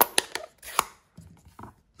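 Sharp clicks and clacks of plastic ink-pad cases and a blending brush being handled: a loud click at the start and three more within the first second, softer taps a little later, and another sharp click at the end.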